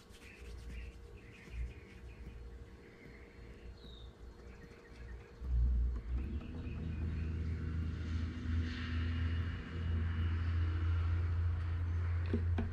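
A steady low rumble sets in about halfway through and holds, with a few faint bird chirps in the quieter first half.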